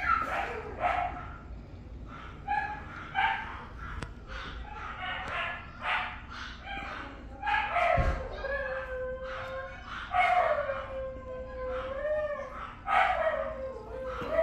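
A dog howling: short yelps at first, then from about halfway several long howls that slide down in pitch and hold it for a second or two.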